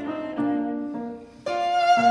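Viola and piano playing a fast Classical-era sonata movement, the viola bowing a line of notes over the piano. The music dips briefly just before the midpoint, then comes back in more loudly about a second and a half in.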